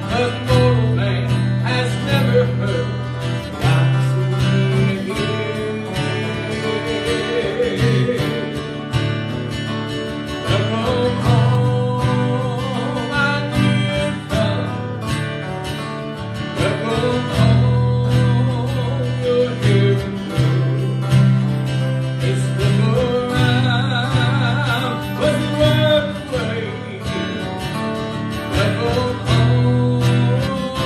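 A man singing a gospel song with acoustic guitars strummed and picked beneath him, amplified through a microphone.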